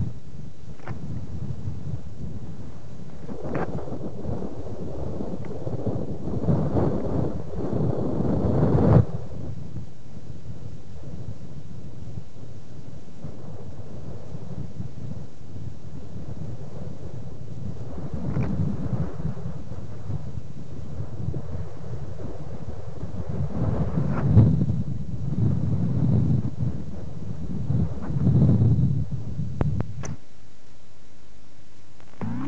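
Wind buffeting a camcorder microphone outdoors: a low, noisy rush that swells in gusts, several times in the first third and again in the last third.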